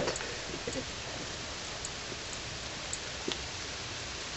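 Steady, even hiss of outdoor background noise, with a few faint ticks.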